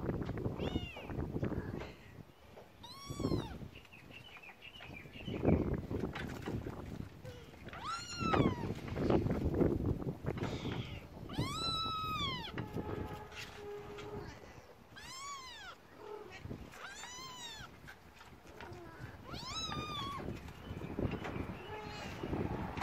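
Trapped kitten meowing repeatedly: about seven high-pitched calls, each rising and then falling in pitch, with low rustling noise underneath.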